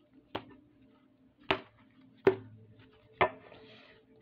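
A deck of cards knocked against a tabletop to square it up, four sharp taps about a second apart.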